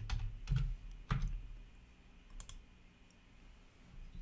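A few faint, short clicks of a computer keyboard and mouse, spread out over low room noise.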